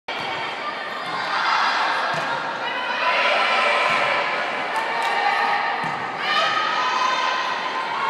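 Girls' volleyball rally in a school gym: players' and spectators' voices calling and cheering throughout, with a few thuds of the volleyball being struck.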